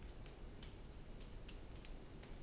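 Boning knife slicing along a whole fish's bones, giving faint, scattered little clicks, about eight in two seconds, as the blade passes over the bones.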